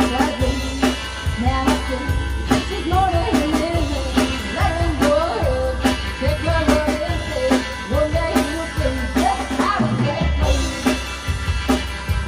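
Live band performing: a woman singing over electric guitar and a drum kit.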